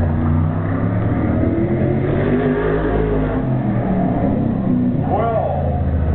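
A 410 super modified race car's V8 engine running hard around a short oval, its pitch climbing about two seconds in. A voice is heard briefly near the end.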